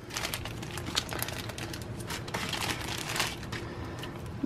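Thin clear plastic bag crinkling and crackling steadily as it is handled and opened to take out a cloth pouch.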